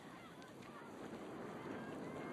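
Birds calling in short rising and falling notes, over a faint low background murmur that grows louder near the end.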